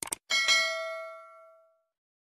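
Two quick clicks, then a bright bell ding with several ringing tones that fades away over about a second and a half: a subscribe-button click and notification-bell sound effect.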